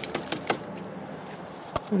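A cardboard lacewing-larvae carrier tapped over a potted plant: a quick run of light clicks in the first half second, then one sharper click near the end.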